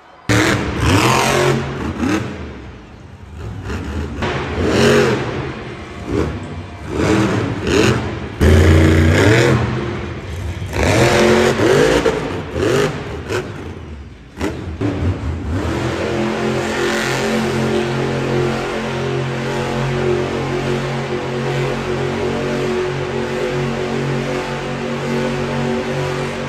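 Monster truck supercharged V8 engines revving hard in repeated bursts, rising and falling in pitch. About halfway through, the engines give way to music with a steady beat.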